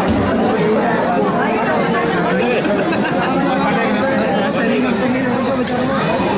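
Many voices talking at once close around the microphone: a dense, steady crowd chatter with no single voice clear.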